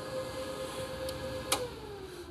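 EG4 18kPV hybrid inverter humming steadily under a heavy load of over 14 kW. About one and a half seconds in, a sharp click comes as the overloaded system trips, and the steady tone then falls away in pitch as the load shuts down.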